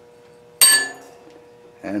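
A single sharp metallic clink with a short bright ring, like a piece of steel scrap set down on a metal surface. A faint steady hum runs underneath.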